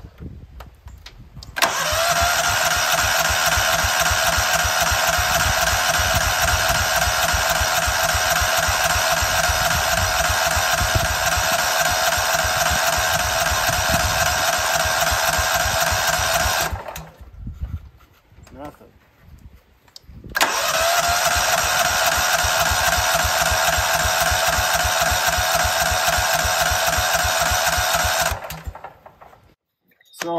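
Cub Cadet HDS 2135 riding mower's electric starter cranking its engine with the choke on, in two long tries of about fifteen and eight seconds. Each try has a rapid, even chugging under a steady starter whine that rises as it spins up. The engine never catches: a crank-but-no-start that the owner, having found spark, takes for a fuel problem.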